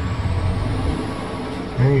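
A steady low rumble with a noisy hiss over it and a faint, slowly rising high whine. It is the kind of sound a running vehicle or nearby traffic makes. A man's voice comes back near the end.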